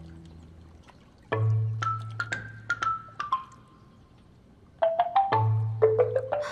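Background score music: short runs of light, sharply struck high notes over a held low bass note. One phrase comes in about a second in and another near the end.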